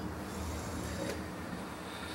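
The Mettler Toledo UMX2 microbalance's motorized draft shield closing with a faint mechanical whir and a light click about a second in, over a steady low hum.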